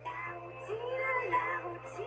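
A young woman singing live into a microphone, accompanied by acoustic guitar; the melody has long held notes that bend up and down in pitch.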